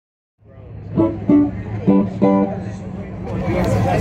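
A few separate notes plucked on a string band's stringed instruments, four single notes in the first half, over a steady low hum, then a denser jumble of notes and voices near the end.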